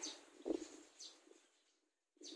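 Faint outdoor background with birds calling, and a brief low sound about half a second in. The sound drops out to complete silence about a second and a half in.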